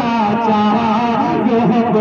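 A man singing a devotional Urdu naat into a microphone, holding long melodic notes with ornamented turns.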